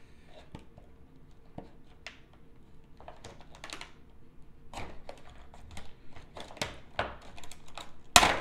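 Folding knife blade cutting through a stiff clear plastic clamshell pack: irregular sharp clicks and crackles of the plastic, sparse at first, then coming thicker and louder from about three seconds in.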